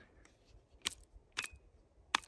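Faint clicks from handling a Goal Zero Guide 12 battery pack and the batteries in it: two sharp clicks about half a second apart near the middle, with a few fainter ticks around them.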